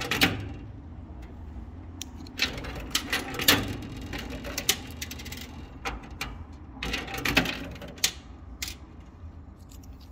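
Coins clicking and clinking in a coin pusher arcade machine fed with 10-peso coins. Scattered sharp metallic clicks over a steady low machine hum, the loudest clink about three and a half seconds in.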